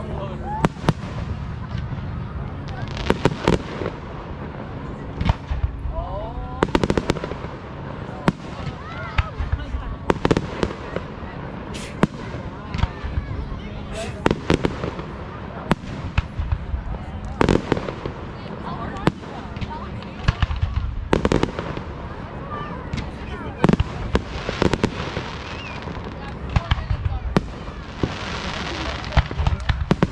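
Aerial firework shells bursting overhead: a long string of sharp bangs at irregular intervals, several often close together.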